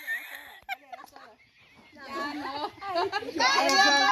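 A group of people's voices calling out over one another, starting about two seconds in after a quieter moment and growing louder toward the end.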